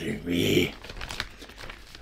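A plastic bag of Findus Pommes Noisettes potato balls crinkling and rustling as it is picked up and handled, after a brief bit of voice at the start.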